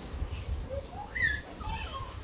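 High-pitched whimpering: a few short cries that rise and fall in pitch, with the loudest, shrillest one just past the middle.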